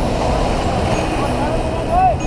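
Surf breaking and washing around people wading, a loud, steady low rumble of churning seawater, with faint voices of bathers over it.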